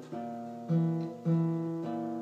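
Acoustic guitar strumming chords at an even pace, a little under two strums a second, with no voice.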